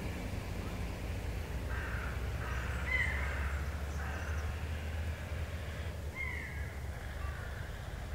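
Outdoor city ambience: a steady low hum with a few short crow-like bird caws, about two and three seconds in and again about six seconds in.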